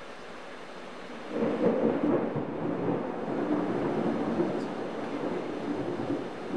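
Steady rain, then a loud roll of thunder about a second in that keeps rumbling on over the rain.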